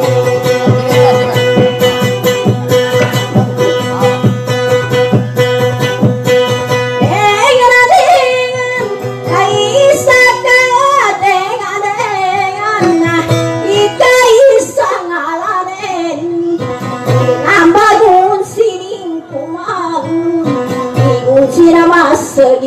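Dayunday song: an acoustic guitar strummed steadily, with a singer coming in about seven seconds in on a winding, ornamented melody full of pitch bends over the guitar.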